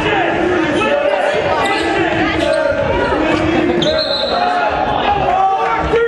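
Basketball game sounds in a gymnasium: a ball bouncing on the hardwood floor among many shouting voices from players and spectators. About four seconds in, a referee's whistle sounds and holds for about two seconds, stopping play for a foul.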